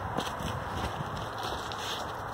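Faint footsteps of a person walking, with light handling rustle over a steady outdoor noise.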